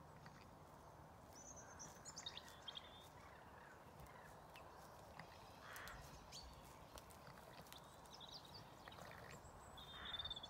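Near silence: quiet outdoor ambience with faint bird chirps, a few about two seconds in and more near the end.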